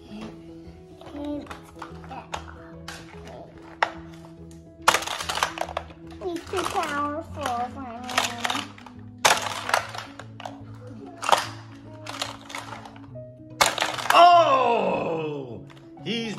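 Background music under a child's wordless vocal play, with several sharp plastic clacks from a toy car playset's launcher and track pieces. Near the end, a loud child's voice slides down in pitch.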